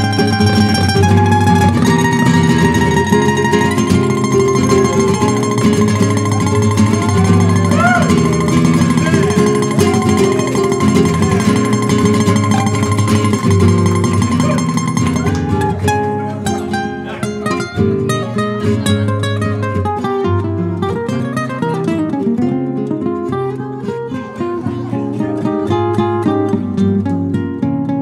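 Duet of a Spanish nylon-string guitar and a jazz guitar playing a slow ballad, with plucked melody and chords. A long held high note sounds over the playing until about halfway through; after that only plucked notes remain, sparser.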